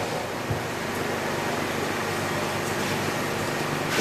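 Steady background room noise in a lull in speech: an even hiss with a faint low hum, holding at one level throughout.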